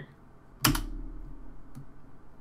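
A single sharp click at the computer desk about half a second in, with a brief low thud under it, then a faint tick near the end.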